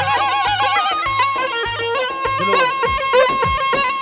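Live Kurdish folk dance music: a short wind instrument plays a trilling, ornamented melody over a Korg Kronos keyboard holding a steady tone and a drum beat, all played through PA speakers. The drum part turns to low, pitch-bending strokes about halfway through.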